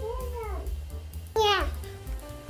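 A toddler's two short high-pitched vocal cries: a rising-and-falling one at the start, then a louder one about one and a half seconds in that falls sharply in pitch. Background music with a steady low beat plays underneath.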